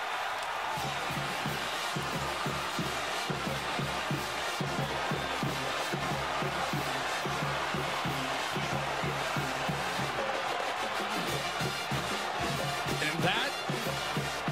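Music with a steady drum beat playing over stadium crowd noise after a touchdown.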